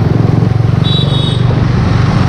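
Single-cylinder engine of a Bajaj Pulsar 135 motorcycle running steadily at low speed in traffic, with a fast low pulsing throb. A brief high-pitched tone sounds about a second in.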